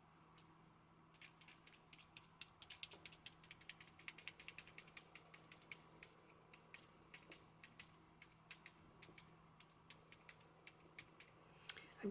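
Firm foam spouncer dabbed over and over on a plastic stencil to pounce paint through it: a faint run of quick, irregular taps that starts about a second in and thins out toward the end.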